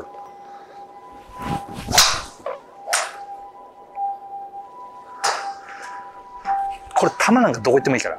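A golf driver swung and striking a ball: a sharp crack about two seconds in, then a second shorter strike about a second later.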